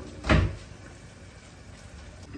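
A kitchen knife pressed down through rolled paratha dough, its blade knocking once on the granite countertop about a third of a second in.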